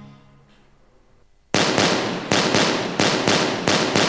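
Background music fading out, then, about one and a half seconds in, a rapid string of gunshots, about eight in two and a half seconds, each with a short ringing tail.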